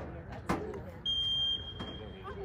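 A referee's whistle blown once about a second in: a single steady, high-pitched blast, strongest for about half a second and then trailing off faintly.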